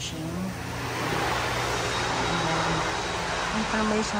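Steady outdoor background noise that swells about a second in, with faint voices of people talking here and there.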